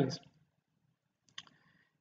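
A brief, sharp computer click about one and a half seconds in, the click that advances the presentation slide, in otherwise near silence after a spoken word trails off.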